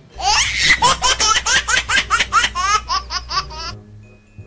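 High-pitched laughter: a fast run of rising 'ha' pulses, about four a second, lasting about three and a half seconds and cut off sharply near the end.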